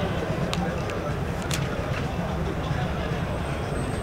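Steady low background rumble, with two faint clicks about half a second and a second and a half in.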